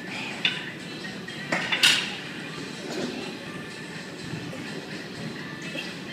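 Metal weight plates clinking: one sharp clink about half a second in and a louder cluster of clinks just before two seconds, over steady gym background music.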